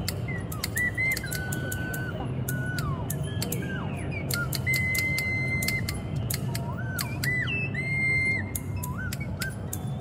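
A small plastic whistle playing high held notes that slide up and down between pitches, with the repeated sharp metal clicks of a pair of scissors being snipped open and shut.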